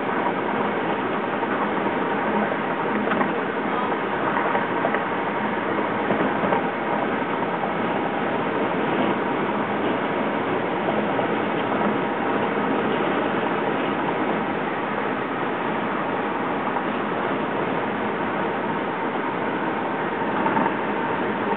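Steady road and wind noise from a moving car, heard from inside the cabin, with an even level and no distinct events.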